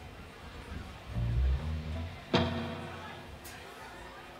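Electric bass guitar through a venue PA between songs: a few low notes about a second in, then one hard-plucked low note that rings and fades over about a second.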